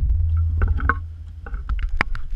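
Low muffled rumble with irregular clicks and knocks, picked up through a GoPro's waterproof housing as it moves and bumps against the perforated plastic of the camera rig.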